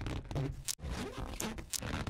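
A rubber balloon rubbed back and forth against a sweater: a repeated scraping, rubbing sound with a couple of sharp clicks from small static sparks made by the friction.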